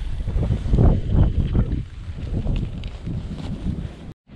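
Wind buffeting the microphone in gusts, strong for the first couple of seconds, then easing.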